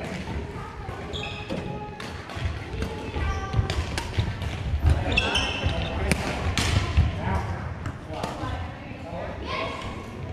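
People talking in a large sports hall, with sharp strikes of badminton rackets on a shuttlecock and footfalls on the wooden court, clustered in the middle of the stretch.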